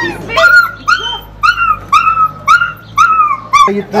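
A puppy trapped down a water drain pipe crying in distress: a run of about eight high-pitched cries, roughly two a second, each rising and then falling in pitch.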